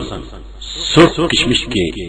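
A man's voice reading aloud in Urdu, beginning with a brief hiss before the words resume.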